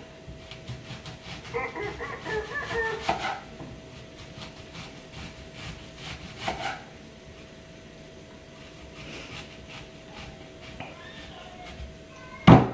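Knife trimming and peeling a red onion on a wooden cutting board: quiet rubbing and scraping with a few light knocks, over a faint steady hum.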